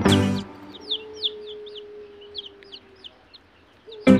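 Young chicks peeping: a run of short, high, downward-sliding cheeps, several a second, after music cuts off about half a second in.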